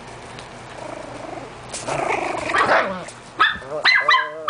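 Miniature pinscher puppy, about four weeks old, growling roughly in play about two seconds in, then letting out a few short, high-pitched yaps near the end.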